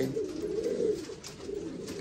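Buchón Gaditano pouter pigeon cooing with its crop puffed up: one low, wavering coo that rises and falls over about the first second, then fades.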